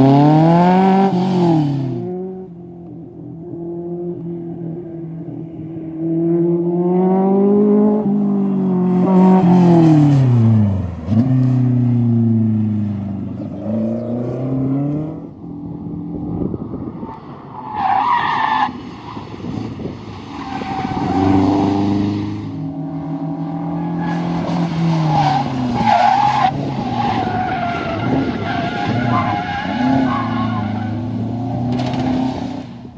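Sports car engines revved hard through a cone slalom, the engine note repeatedly climbing and dropping with gear changes and lifts, with some tyre squeal. A Seven-style roadster is heard first, then a saloon car.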